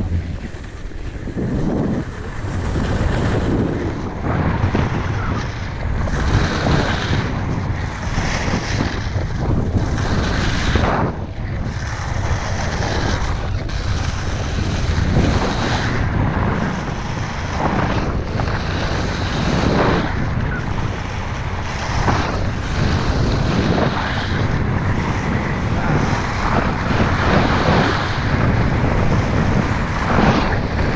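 Wind buffeting an action-camera microphone on a downhill ski-bike run, mixed with the skis scraping and hissing over icy, hard-packed snow. The noise is loud throughout and comes in irregular surges.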